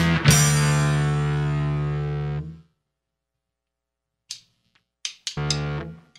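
The end of a rock song played on distorted bass guitar and drums: a last drum hit and a distorted bass chord left ringing, which fades for about two seconds and then cuts off. After a silence come a few short clicks and a brief half-second stab of the distorted bass chord near the end.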